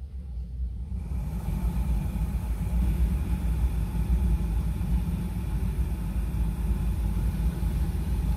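Renault Scénic running: a steady low rumble that grows louder about a second in, with a steady whirr over it.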